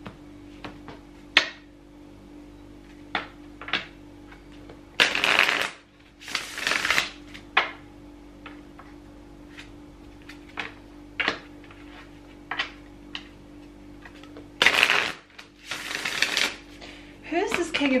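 A deck of cards being shuffled by hand: scattered taps and clicks of cards knocking together, with four longer rustling bursts of cards sliding through the hands, two about five to seven seconds in and two about fifteen to sixteen seconds in.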